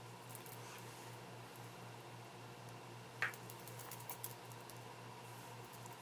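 Quiet room tone with a steady low hum and faint rustling and small ticks of fingers working seed beads and beading thread, with one short, sharper tick about three seconds in.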